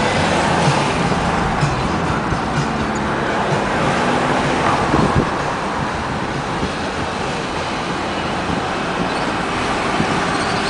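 Steady road and engine noise of a moving car, heard from inside its cabin while driving in light city traffic.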